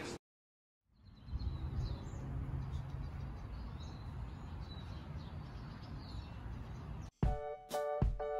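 Outdoor ambience: a steady low background noise with faint, scattered bird chirps. Music with plucked notes starts near the end.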